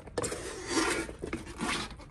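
Used rubber karting tires rubbing and shifting against each other underfoot as someone steps onto a pile of them, in a few irregular scuffs.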